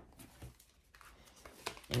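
Tarot cards being handled: a faint papery rustle with a few soft clicks as the deck is squared and a card is dealt onto the table.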